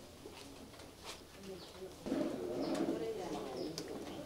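Pigeon cooing, starting about two seconds in, over faint background voices.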